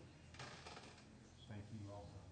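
Near silence in a council chamber: a brief rustle about half a second in, and faint, indistinct voices off-microphone near the end.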